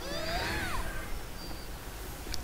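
Faint soundtrack of an animated fight scene, with a brief gliding, sweeping sound in the first second over a low steady hum.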